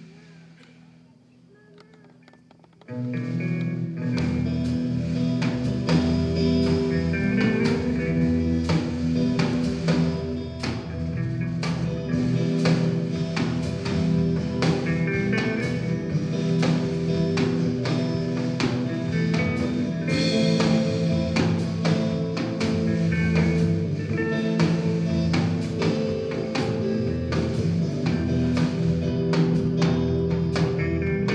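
A live blues-rock band starting a song: quiet at first, then about three seconds in guitars, drum kit and bass guitar come in together and play on with a steady beat.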